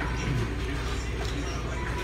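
Restaurant room noise: a steady low hum with faint background music and distant voices.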